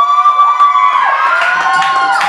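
Audience cheering a prize winner: a long, high whooping shout, held for about a second, followed by a second, slightly higher one, with a little clapping coming in near the end.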